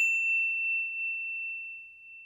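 A single high-pitched ding sound effect: one clear bell-like tone, struck just before and ringing out, fading slowly.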